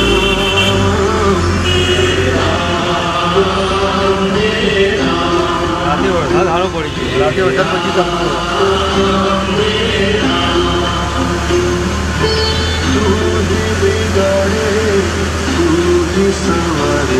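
Devotional singing with music, a chant-like melody held on steady notes, over the low steady hum of a vehicle engine.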